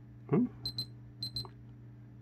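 An electronic beeper sounds two quick high-pitched double beeps, the second pair about half a second after the first.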